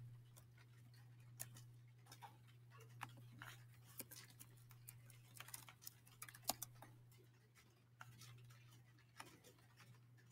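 Faint, irregular keystrokes and clicks on a computer keyboard and mouse, a few seconds apart, over a steady low hum.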